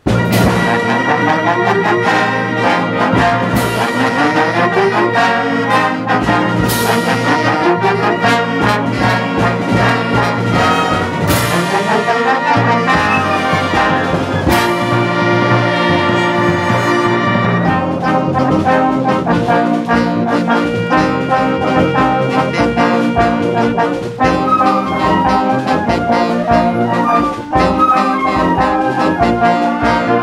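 Concert band of brass, woodwinds and percussion starting a fast piece all at once on the downbeat, playing quick rising runs. Cymbal crashes come every few seconds through the first half.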